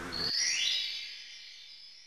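An electronic sound effect: several high pitches glide upward together, then hold and fade out over about a second and a half. The race car's engine sound cuts off just before it begins.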